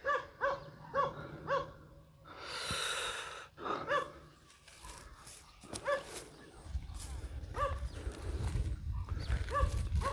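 A dog barking: four quick barks about half a second apart, then single barks every two seconds or so. A brief hiss comes about two and a half seconds in, and a low rumble runs under the second half.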